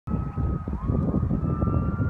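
Outdoor background noise: an uneven low rumble with a thin, steady high tone above it, and a second tone that slides slightly upward a little under a second in.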